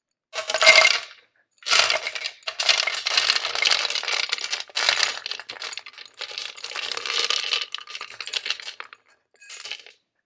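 Dry dog kibble rattling in a jar and pouring out into a plastic slow-feeder bowl, hard pellets clattering in bursts. The loudest burst comes about half a second in, then near-continuous rattling until a short last trickle near the end.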